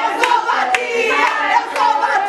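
Voices singing to steady rhythmic hand-clapping, about two claps a second.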